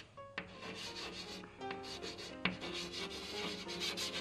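Chalk writing on a blackboard: a scratchy rasp of strokes, with a couple of sharp taps as the chalk meets the board.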